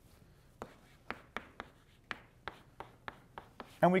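Chalk on a blackboard writing an equation: an irregular series of short, sharp taps and strokes of chalk against the slate, about a dozen in three seconds.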